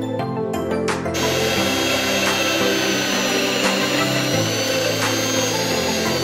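Electric rotary tool running at high speed with a steady high whine, spinning a small wooden piece against a sanding stick, starting about a second in over background music.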